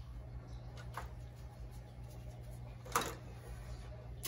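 Soaked rock wool cubes being set into thin plastic cups by a gloved hand: a faint tap about a second in and a sharper plastic click near three seconds, over a steady low hum.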